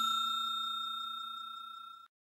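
Bell-chime sound effect ringing out after being struck, fading steadily until it is cut off.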